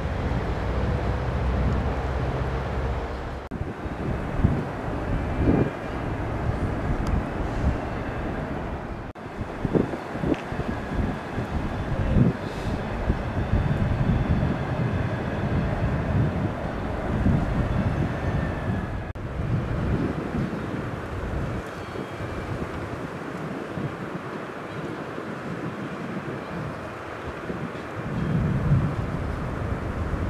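Outdoor ambience dominated by wind buffeting the camera microphone, a loud uneven low rumble with gusts. It breaks off abruptly a few times.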